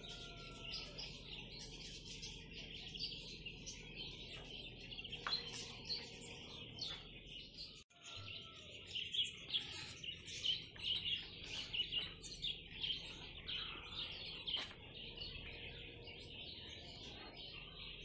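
Small songbirds chirping and twittering, many short overlapping calls, with a brief break about eight seconds in.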